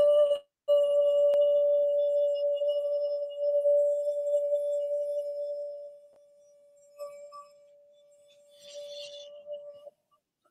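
A man's voice sounding one steady, nearly pure tone, held at a single pitch: the vocal "beam" of a voice coach, clean enough to pass for a fault in a television's sound. It starts about a second in, and after about six seconds it fades to faint and trails on until near the end.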